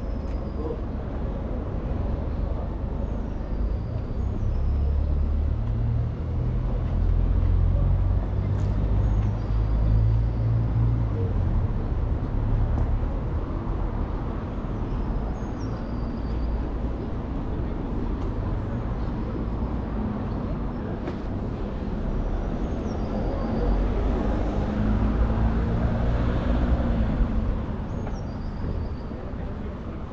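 Outdoor town-centre ambience: a steady rumble of road traffic, growing louder for a few seconds near the end as a vehicle passes. Short high chirps from small birds come every few seconds.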